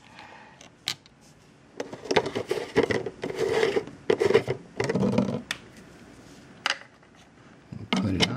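Plastic screw-top lid being twisted on a clear plastic jar: a click about a second in, then a few seconds of irregular scraping and clicking from the threads and handling, and one more click near the end, as a lid with a hole cut in it replaces the solid one.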